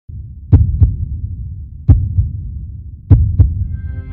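Intro sound effect of a heartbeat: three pairs of deep thumps, each pair about a third of a second apart and the pairs about 1.3 s apart, over a low rumble. Sustained musical tones come in near the end.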